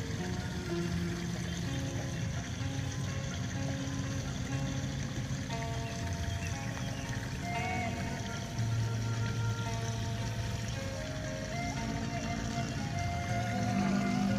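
Background music: held notes that step from one pitch to another every second or two, at a steady moderate level.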